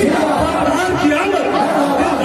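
A man's unaccompanied voice reciting a devotional naat into a stage microphone, amplified, with other men's voices talking over it.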